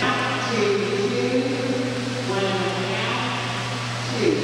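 Indistinct voices echoing around a large indoor pool hall, over a steady low hum.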